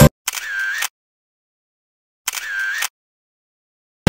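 Background music cuts off, then a camera-shutter sound effect plays twice, about two seconds apart, each a little over half a second long, with dead silence around them.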